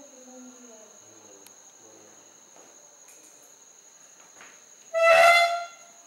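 Steady high-pitched insect chorus, two constant tones running without a break. A faint voice sounds in the first second, and about five seconds in a loud, steady honk-like tone lasts under a second.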